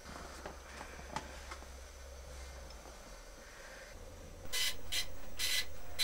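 Quiet room tone with a few faint clicks, then, about four and a half seconds in, a run of short hissing bursts.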